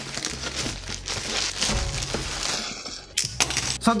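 Plastic mailer bag crinkling and rustling as a cardboard box is pulled out of it, in irregular scrapes and crackles with a short lull about three seconds in.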